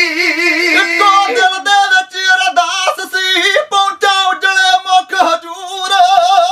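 Male voices singing kavishri, Punjabi folk ballad singing, unaccompanied, with a wavering, ornamented melody line.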